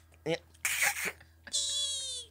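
A man's high-pitched falsetto squeal, held for under a second and falling slightly in pitch, comes in after a short spoken "no, no" and a breathy laugh.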